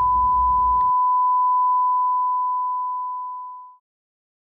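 A single steady electronic beep: one pure, unwavering high tone held for well over three seconds, fading away shortly before the end.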